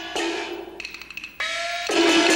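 Chinese opera percussion: two gong strikes whose pitch bends upward after each hit, with a quick patter of small cymbals between them, and the full band coming back in near the end.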